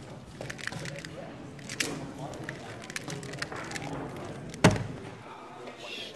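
Rapid clicking of a magnetic MGC Square-1 puzzle being turned in a speedsolve, then one loud slap about three-quarters of the way through as the puzzle is put down and the hands hit the timer pads to stop the clock, ending the solve.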